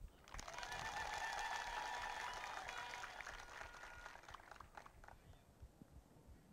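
Faint audience applause that starts right after a loud declaimed line, holds, and dies away about five seconds in.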